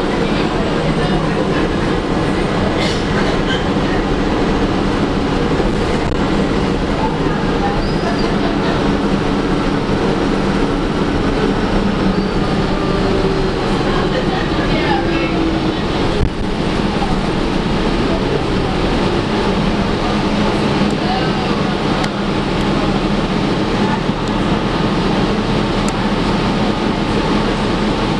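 Inside a 2011 Gillig Advantage transit bus under way: the engine and driveline hum steadily under road noise, with scattered light rattles and a single sharper knock about sixteen seconds in.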